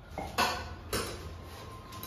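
Stainless steel tumbler clinking as it is handled at the tap of a plastic water cooler, with two sharp metallic clinks about half a second and about a second in.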